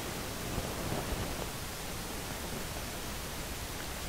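Steady background hiss, with a few faint soft handling sounds of a canvas being held and moved about a second in.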